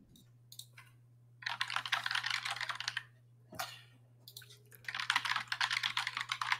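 Rapid typing on a computer keyboard, in two runs of quick clicking: one from about a second and a half in lasting about a second and a half, and another starting past the middle and carrying on to the end.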